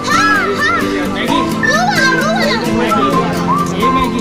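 Children's voices, high-pitched calls and chatter, over music with steady held notes.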